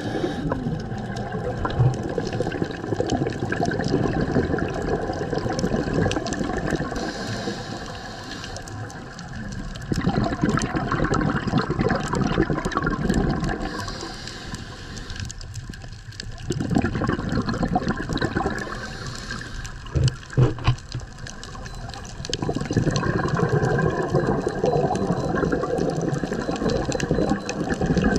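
Underwater bubbling and rushing of a scuba diver's exhaled breath, swelling and easing every few seconds as the diver breathes, muffled as heard through an underwater camera housing. A few brief thumps come about two-thirds of the way through.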